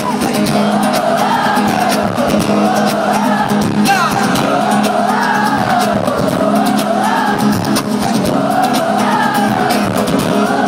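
Live pop song played through an arena sound system and heard from among the audience: a sung melody rising and falling in repeated phrases over a steady bass and beat.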